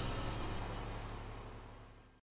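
A low, steady vehicle engine hum that fades out evenly to silence.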